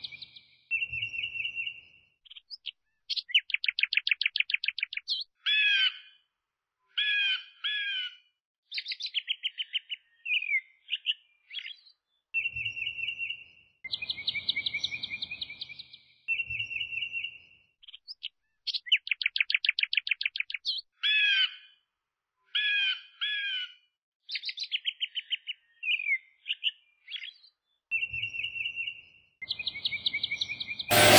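Birdsong of chirps, rapid trills and short whistled notes, a recording that repeats the same sequence about every 14 seconds.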